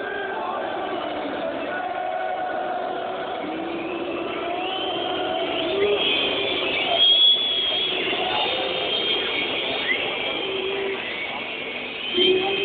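Football stadium crowd in the stands chanting and shouting together, a dense mass of voices. Shrill high-pitched sounds join in from about five seconds in. Heard through a low-quality phone recording that sounds dull and cuts off the highs.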